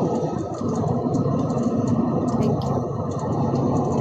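Steady low rumbling background noise on the call line with a few faint clicks; no speech.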